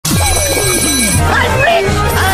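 Cartoon soundtrack: music with a pulsing bass line and sliding, voice-like pitched sounds, under a high ringing tone that stops about a second in.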